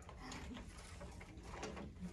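Faint clicks and rustles of a wicker picnic basket being handled and passed from one person to another.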